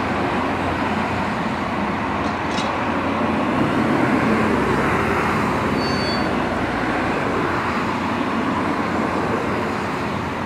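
Diesel engine of a Lännen 8600C backhoe loader running under hydraulic load as the backhoe digs and lifts its bucket, the engine note swelling briefly about four seconds in.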